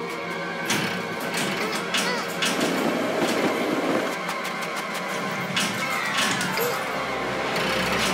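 Cartoon score music with sound effects laid over it: repeated sharp clacks and clatter of a handcar's wheels rolling on railway track, and a metal clank near the end as a track switch lever is thrown.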